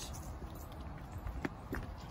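A few short clicks and knocks from the rear barn doors of a VW T6 van being unlatched and swung open: one right at the start, two more close together about a second and a half in. A low steady rumble runs underneath.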